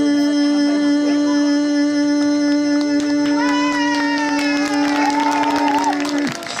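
Hurdy-gurdy playing: a loud steady drone with a wavering melody over it, the melody moving higher and louder about halfway through.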